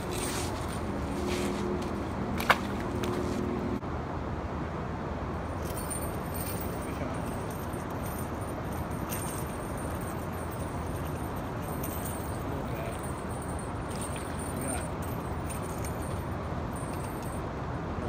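Spinning fishing reel being cranked, a low whirr for the first four seconds, with one sharp click about two and a half seconds in, over a steady rushing hiss.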